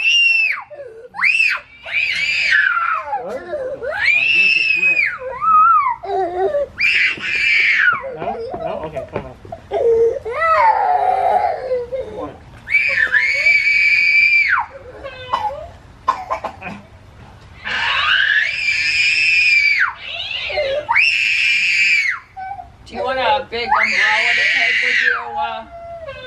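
A young child screaming and crying in very high-pitched wails, each a second or two long, over and over with short breaks: the child is upset.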